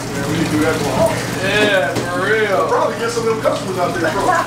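Speech: men talking, over a steady low hum.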